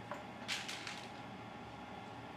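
A few short sharp clicks and rattles about half a second in, from a plastic ball-and-stick molecular model of cyclopropane being handled and turned. They play over a steady background hum.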